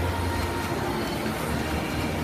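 Steady, echoing din of an indoor swimming pool hall during a race: swimmers splashing and spectators in the stands, over a low hum.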